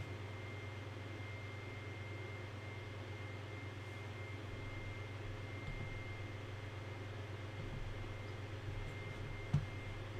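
Room tone: a steady low electrical hum with faint hiss and a thin, high, steady tone, broken by one short click near the end.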